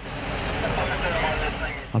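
Street traffic noise from the road at a crash scene, swelling and then fading as a vehicle passes.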